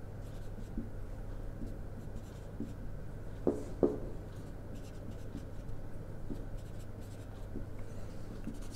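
Whiteboard marker drawing on a whiteboard, sketching a curve and tick marks with faint scratching strokes and two short squeaks about three and a half seconds in, over a steady low hum.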